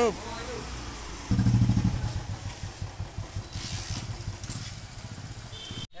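Motorcycle engine starting about a second in, with a brief burst of revs, then idling with a steady low pulsing beat.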